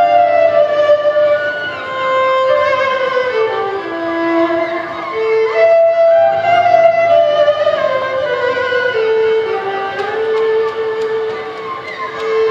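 Solo violin played with the bow: a melody of long held notes joined by sliding glides in pitch, heard through stage amplification.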